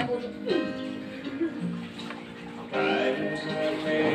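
Background music, a song with sustained melodic tones, quieter in the middle and louder again near the end.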